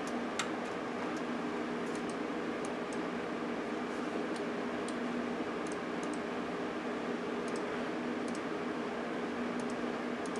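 Steady hum of running computer equipment with scattered faint clicks of a computer mouse and keyboard, irregular and a second or so apart.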